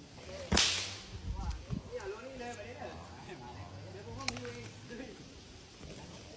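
A single loud, sharp crack about half a second in, followed by faint voices and a smaller click near the end.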